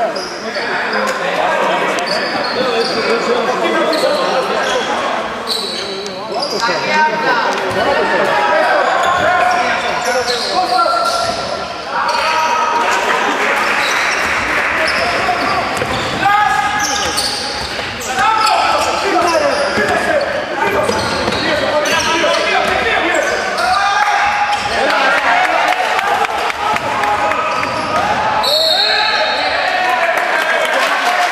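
A basketball bouncing on a wooden gym floor during play, among players' and spectators' voices calling out in a large, echoing hall.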